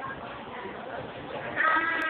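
A girl's voice in a loud, high-pitched, drawn-out call, starting about one and a half seconds in over low background chatter.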